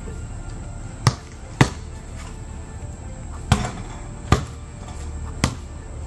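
A basketball bouncing on a concrete pad, five sharp bounces at an uneven pace, with music playing underneath.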